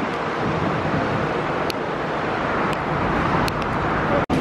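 Steady city street ambience: a continuous hum of road traffic, with a few faint ticks.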